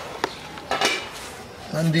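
Cookware clattering against a large metal cooking pot: one sharp knock about a quarter second in, then a louder quick clatter of several knocks just before the one-second mark.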